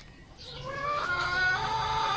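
A rooster crowing: one long call that starts about half a second in and grows louder.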